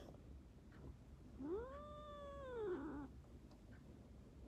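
Domestic cat giving one long meow, about a second and a half, that rises in pitch, holds, then falls away.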